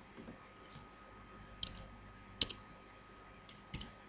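Faint computer mouse clicks and keyboard keystrokes, a few scattered short clicks with the loudest about two and a half seconds in and a quick pair near the end, as digits are typed into a field.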